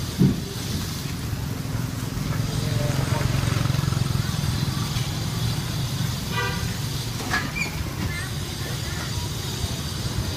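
Street ambience: the steady rumble of passing traffic with voices in the background, and a short vehicle horn toot about six and a half seconds in.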